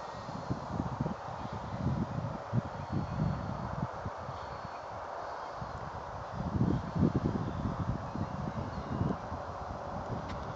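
Wind buffeting a phone's microphone in uneven gusts, strongest about seven seconds in, over a steady outdoor hiss.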